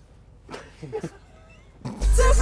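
A few faint, short voice-like sounds, gliding up and down in pitch, about half a second and a second in, over a quiet background.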